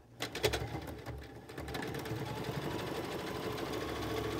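Singer Scholastic Plus electric sewing machine: a few clicks, then the machine runs steadily, sewing a zigzag stitch through fabric and PUL.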